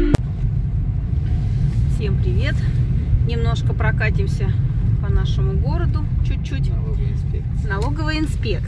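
Steady low rumble of a car driving, heard from inside the cabin, with a person talking over it from about two seconds in.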